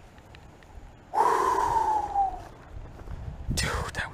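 A man's long, loud sigh about a second in, its pitch falling as the breath runs out: an excited exhale.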